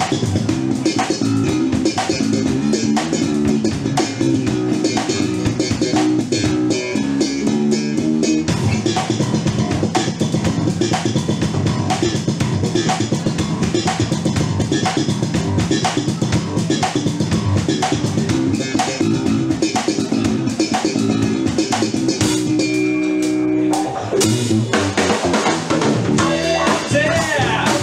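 Live band playing an instrumental passage on drum kit, electric bass and guitar, with a steady beat. Near the end the drums drop out for about a second under a held chord, then the band comes back in.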